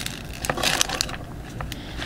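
A hand rummaging among things on a desk while looking for a stack of cards: scattered light clicks and taps, with a short rustling scrape about half a second in.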